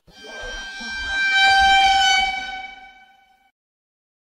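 A single steady horn-like tone that swells in over the first second or so and fades away about three and a half seconds in.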